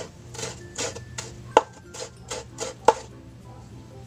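Kitchen knife chopping vegetables on a bamboo cutting board: about eight sharp knocks, roughly three a second, two of them louder. The chopping stops about three seconds in, leaving a low steady hum.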